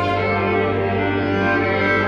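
Violin bowed live, playing long held notes over a steady low bass note.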